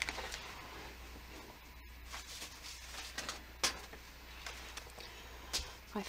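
Faint handling sounds of a stencil being picked out and set down on the page: a few light clicks and taps, the sharpest a little past halfway, over a low steady hum.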